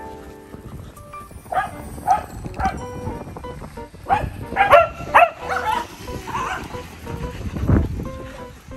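Several dogs barking and yipping in short, sharp bursts while playing and chasing, the barks coming thickest and loudest about four to six seconds in, over background music. There is a low thump near the end.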